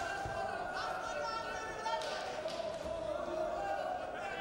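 Raised voices calling out across a wrestling hall over the grappling, with a few dull thumps from the wrestlers on the mat.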